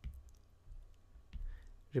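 A few faint, sharp clicks of a stylus tapping a tablet screen, spaced irregularly.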